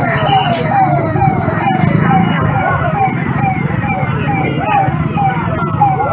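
A siren yelping: a quick falling wail repeated about three times a second, steady throughout, over the chatter of a crowd.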